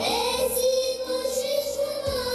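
Recorded song with a singing voice that swoops up into one long held note, over an instrumental backing.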